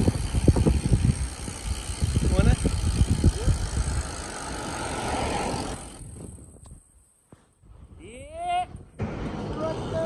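Riding noise on a wet road: wheels rolling over wet tarmac with wind rumbling on the microphone, cutting out about six seconds in. Near the end, a short voice-like call that rises and falls.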